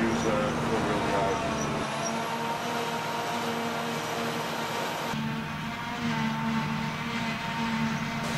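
Large diesel farm machines running steadily in the field, a tractor and a Claas Jaguar self-propelled forage harvester, with a held engine hum. The sound changes abruptly about two and five seconds in.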